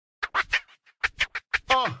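Turntable scratching opening a hip-hop intro: a string of short, quick scratch strokes, then a longer scratched vocal sample sliding down in pitch near the end.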